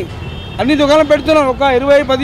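A man speaking over a low, steady rumble of street traffic. There is a short pause in the speech at the start, and the voice resumes after about half a second.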